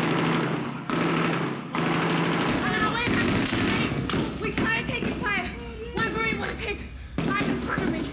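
Gunfire in a street firefight, loud and dense for the first two and a half seconds with sharp cracks, then voices shouting over it.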